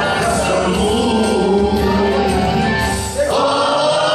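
Music with a group of voices singing together. A little after three seconds in, the low part drops out and a new sung phrase begins.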